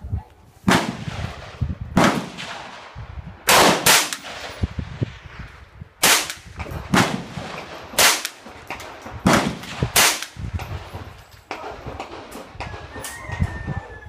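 Shots from a Heckler & Koch MP5 rifle in .22 LR, fired semi-automatically one at a time: about ten sharp cracks at irregular intervals of roughly a second, two of them in quick succession. Fainter cracks follow near the end.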